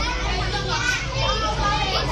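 Many children's voices chattering and calling at once, high-pitched and overlapping, as in a busy schoolyard.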